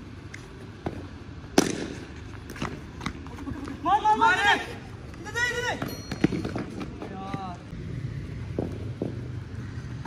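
A taped tennis ball cracking once off a cricket bat, sharp and loud, about a second and a half in, followed by players shouting as they take a single, with a few lighter knocks.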